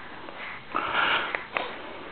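A sniff: a short, breathy rush of air through the nose about a second in, followed by a couple of small clicks.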